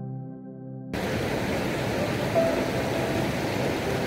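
Soft ambient music ends abruptly about a second in, replaced by the steady rush of a mountain stream running over boulders. A faint short tone sounds near the middle.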